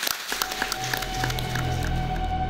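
Audience clapping in applause, thinning out as closing music comes in about a third of a second in and takes over with low bass notes and a held tone.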